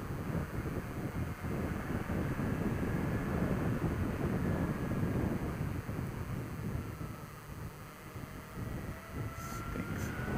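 Wind rushing over the microphone on a moving motorcycle, with the Suzuki SFV650 Gladius's 645 cc V-twin engine running underneath. It gets quieter about seven seconds in and picks up again near the end.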